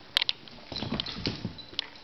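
Dog's nails clicking and tapping on a hardwood floor as it walks, in short irregular taps, with one sharp click just after the start.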